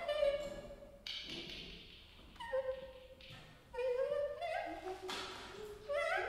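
Free-improvised music: short pitched phrases whose notes slide and step up and down, with a sharp attack about a second in and another near the end.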